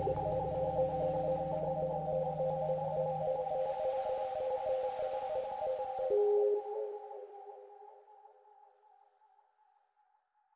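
Calm ambient relaxation music of long held tones over a soft hiss. The low notes drop out about a third of the way in, and a single new note enters just past the middle. The whole track then fades out to silence over the last few seconds.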